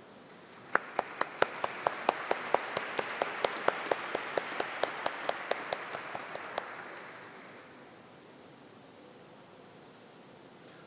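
Audience applauding, with one person's claps much louder and closer than the rest, keeping a steady beat of about four or five a second. The applause starts about a second in and dies away over a few seconds after the close claps stop.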